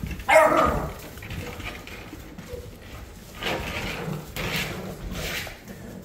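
Several puppies yipping. One sharp yelp comes about a third of a second in, then a few softer yips and whines follow in the second half.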